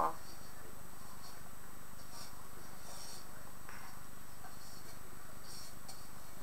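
Faint intermittent scraping of a spoon stirring meat in a pan, a few soft strokes over a steady faint hiss.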